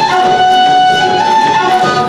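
Folk dance music with a fiddle carrying the melody, playing steadily at a lively level.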